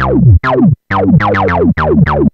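Korg Electribe 2 playing a distorted acid bass line: a sync-saw oscillator through a resonant low-pass filter that sweeps downward on every note. Short repeated notes come about three a second, with brief gaps between them.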